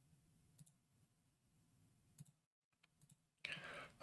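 Near silence with two faint computer-mouse clicks, one about half a second in and one about two seconds in.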